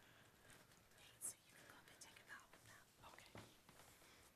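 Near silence with faint whispering voices and a brief click about a second in.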